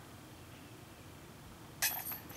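Faint steady background hiss, then near the end a sudden sharp metallic clank: a disc golf putt striking the top band of a metal chain basket and dropping in.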